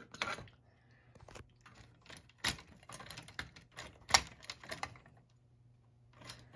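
Irregular sharp metal clicks and clacks from a vintage model train dump car and its track accessory being worked, about a dozen in a few seconds with two louder knocks near the middle, over a faint low hum.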